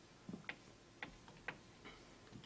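Faint, irregular clicks and taps, about six in two seconds, from a small object handled against a tabletop.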